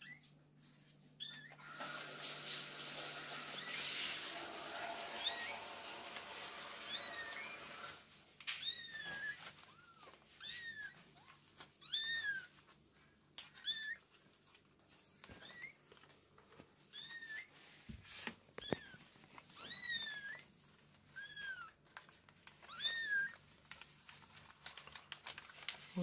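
Newborn kittens mewing over and over: short, high-pitched cries that rise and fall, about one every one and a half seconds. Before the mewing starts there are several seconds of steady noise.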